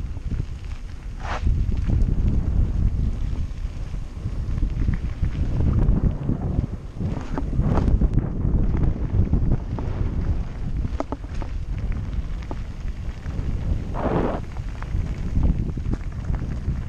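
Wind buffeting the microphone of a camera on a mountain bike riding downhill, over the rumble and crunch of tyres on a gravel track and small rattles from the bike.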